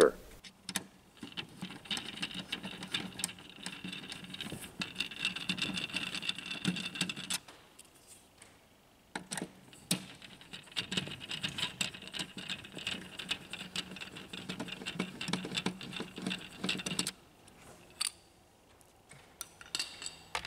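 A screwdriver backing two screws out of a laser printer's plastic cover, one after the other. Each screw takes several seconds of gritty clicking and scraping as it turns, with a short pause between the two.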